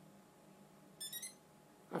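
A short run of a few quick electronic beeps, stepping in pitch, from the Heliway Ninja 913 GPS quadcopter about a second in. They signal the end of its IMU calibration as the drone reboots.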